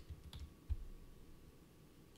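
A few light clicks at a computer desk, with a short low thump about three-quarters of a second in, then faint room tone.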